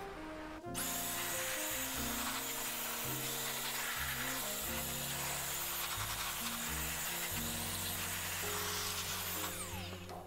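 Electric dust blower switched on about a second in, blowing a steady rush of air into a PC case, then switched off near the end, its motor winding down. Background music plays under it.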